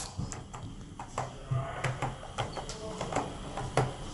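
Elevator car-call pushbuttons clicking as they are pressed one after another: a string of light, scattered clicks. The floors are locked off, so the presses do not register as calls.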